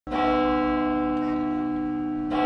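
One stroke of a church bell, struck at the very start and then ringing on with a slowly fading hum.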